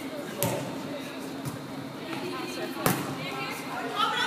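A volleyball being hit twice, a sharp smack about half a second in and a louder one near the three-second mark, each echoing in the gymnasium, with players' voices underneath.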